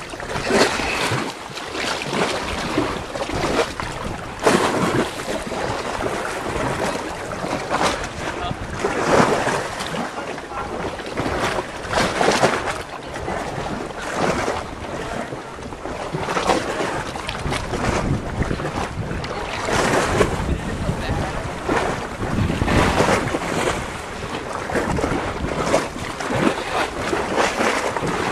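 Wind buffeting the camcorder's microphone in irregular gusts, over small waves lapping in shallow sea water.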